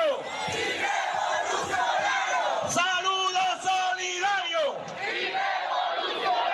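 Large crowd of people shouting together, many voices overlapping without a break.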